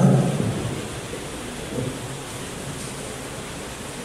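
Steady hiss of room noise in a large hall, picked up through the microphone and sound system, with no one speaking.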